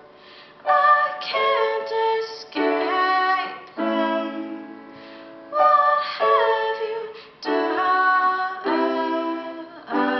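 Grand piano played in slow chords, a new chord struck every second or two and left to ring, with a woman singing over it in long held notes.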